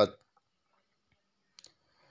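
Two faint, short clicks in quick succession about a second and a half in, in an otherwise near-silent pause.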